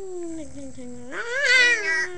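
A boy's voice making a drawn-out, wavering wail: a low moan sliding downward, then rising louder just past a second in and sliding down again.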